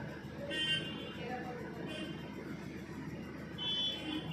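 Background traffic noise with three short, high-pitched vehicle horn toots.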